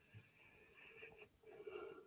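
Near silence, with only a very faint steady background.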